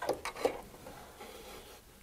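Scissors snipping the thread tails after a machine-stitched word has tied off: two short snips in the first half second.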